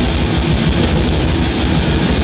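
Death metal band playing live, loud and dense: distorted electric guitars over fast drumming.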